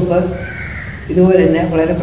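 A crow cawing once, faint, in the first second, followed by a man's voice.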